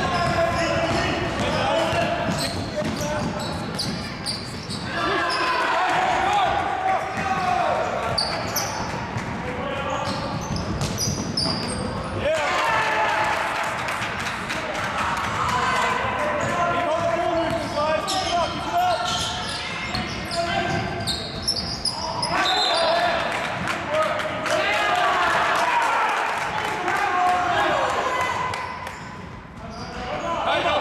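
Basketball game sounds in an echoing gym hall: the ball bouncing on the hardwood court, with voices calling out across the hall.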